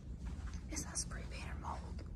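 A person whispering a few breathy words with sharp hissing 's' sounds, over a steady low rumble.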